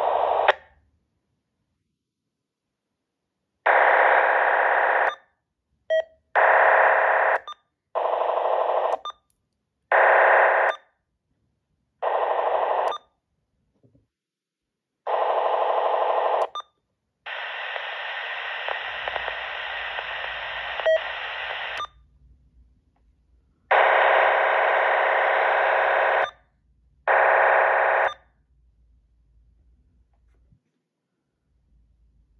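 Uniden BC125AT handheld scanner on quick search in narrow FM, stopping on active frequencies around 451–455 MHz. Its speaker gives about nine short bursts of static-like radio noise, each cut off abruptly by the squelch, with silence between. One longer, quieter burst comes just past the middle.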